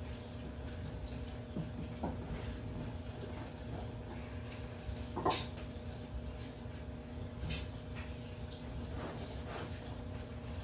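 A few light clicks and knocks of PVC pipe and a 45-degree fitting being handled and fitted, the sharpest about halfway, over a steady low hum.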